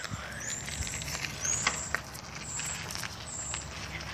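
Phone microphone being handled and moved about: rustling with scattered clicks and knocks over a low rumble, and short high chirps about once a second.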